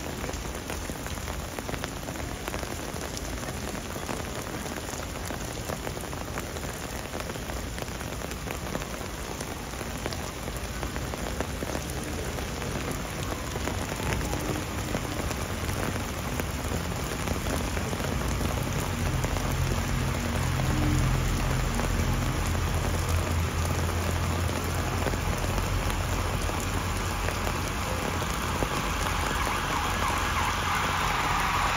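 Heavy rain pouring steadily onto paving and umbrellas. A low rumble builds in underneath during the second half, and the whole sound grows louder.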